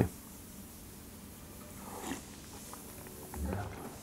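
Faint sounds of a person eating borscht from a spoon: quiet chewing and mouth sounds, with a short low sound a little after three seconds in.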